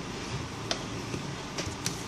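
A few small, sharp metallic clicks, a thin metal pick and tools touching the phone's circuit board and SIM slot, over the steady hum of a fan.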